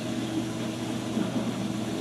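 Steady low electrical hum with a faint hiss underneath.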